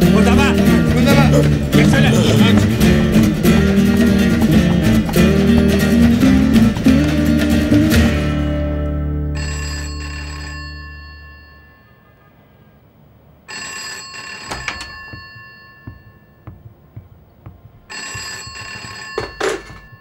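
Guitar music stops about eight seconds in, its last chord fading out. Then a rotary-dial desk telephone's bell rings three times, each ring about a second long and about four seconds apart.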